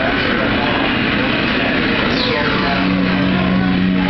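Loud bar din: many people talking at once over a steady noisy roar, with background music; a held low note comes in a little past halfway.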